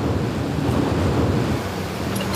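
Steady, loud, low rushing noise like wind buffeting the microphone, with no distinct knocks or spring creaks standing out.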